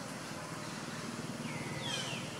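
Macaque giving short high-pitched squeaks, two falling calls near the end, over a steady low hum.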